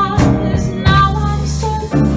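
Live small-group jazz: a woman singing long held notes, backed by upright bass and drums with a few cymbal strikes.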